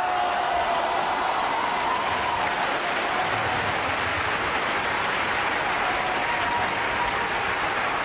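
Large opera-house audience applauding steadily, breaking in as the orchestra's final chord dies away.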